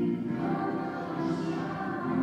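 A group of voices singing a church hymn in long held notes, a little softer between phrases in the middle.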